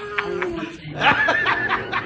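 People laughing.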